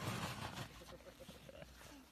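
Faint, muffled vocal sounds from a person, fading away just after a scream cuts off.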